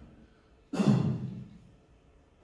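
A man's breathy sigh, about 0.7 s in, starting sharply and fading over about half a second.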